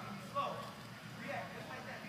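Indistinct voices of several people talking in a large indoor sports hall, with a short louder moment about half a second in.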